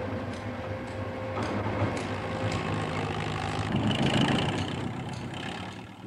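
A heavy engine, typical of a construction crane, running steadily with a low hum; its tone shifts about four seconds in.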